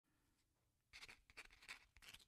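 Faint scratchy strokes of a pen writing on paper, starting about a second in as a quick run of short strokes.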